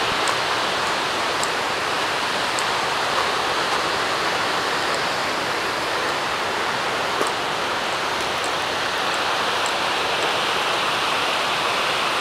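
A mountain river rushing over rocks: a steady, even roar of flowing water.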